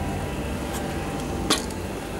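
Steady mechanical hum with a faint click just before a second in and a single sharp click, like metal being handled, about a second and a half in.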